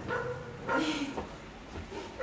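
A dog barking several times in short bursts.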